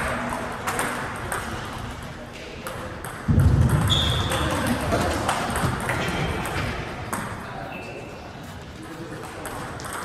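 Table tennis ball in a rally: a string of sharp clicks as it is struck by the paddles and bounces on the table, with a louder dull thump about three seconds in.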